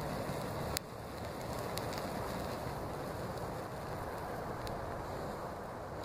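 Steady low rumble and hiss of background noise, with one small click a little under a second in.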